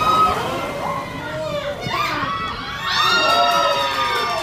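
Several children shouting at once, breaking into long held cheers about three seconds in: cheering for a goal.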